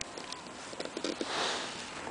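A short sniff close to the microphone, about a second and a half in, preceded by a few faint clicks.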